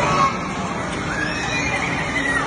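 Children's high-pitched squeals rising and falling in pitch, two or three in a row, over the steady din of an indoor amusement arcade.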